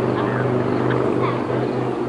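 A steady low hum, with faint voices over it.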